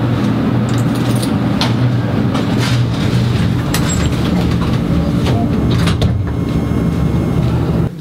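Elevator car in motion: a steady low rumble and hum with scattered clicks and rattles, cutting off abruptly near the end.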